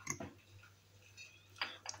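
Faint clicks and taps of cucumber pieces and garlic cloves being pushed by hand into a glass jar: one near the start and a couple near the end.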